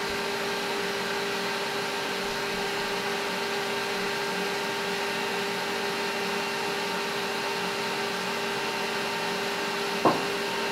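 Electric stand mixer running steadily, a constant motor hum with a steady tone, as it creams butter and sugar in its steel bowl.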